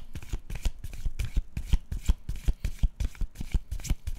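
A deck of tarot cards being shuffled by hand: a continuous run of quick card flicks and slaps, several a second.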